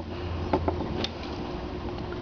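A few faint clicks and taps of hands handling tools on a wooden work surface, over a steady low hum.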